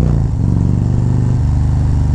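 Harley-Davidson Road Glide's V-twin engine running under way. Its pitch drops briefly just after the start, then holds steady.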